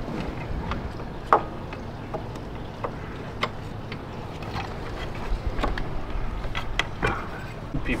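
Scattered light clicks and taps of a metal high-pressure fuel pump being handled and set into place on the engine, over a steady low background hiss.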